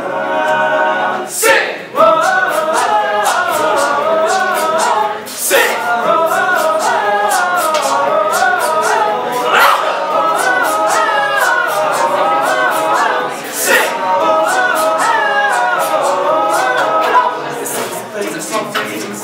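A cappella vocal group of young men singing a song in close harmony, several voices together with no instruments, with a sharp accent about every four seconds.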